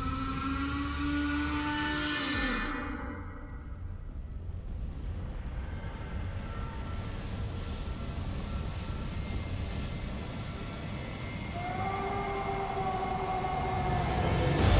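Film trailer soundtrack: a steady low rumbling drone with long held horn-like tones, one bending down in pitch near the start, then fading and swelling again with two new held tones near the end.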